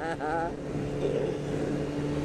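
Honda CBR600F1 Hurricane's inline-four engine running steadily at highway cruising speed, with wind rushing over the helmet-mounted microphone. A short laugh from the rider comes in at the start.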